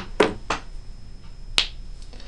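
Four short, sharp clicks or taps: one right at the start, two close together a quarter and half a second in, and a last one past the middle.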